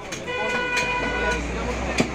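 A vehicle horn sounds once, a single steady tone lasting about a second, over the low hum of the market street. A single knock comes at the very end, like the cleaver landing on the wooden chopping block.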